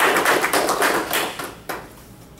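Audience applause in a small room: a dense patter of many hands clapping that dies away about a second and a half in, followed by a single sharp click.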